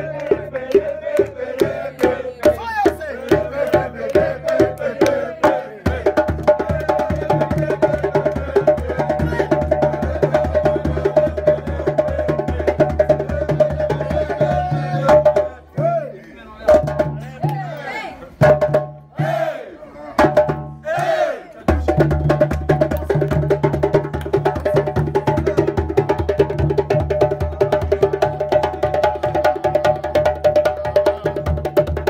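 Djembe drumming with music: fast hand strokes in a steady rhythm over a sustained pitched backing. For several seconds around the middle the drumming breaks off for voices, then the groove comes back in.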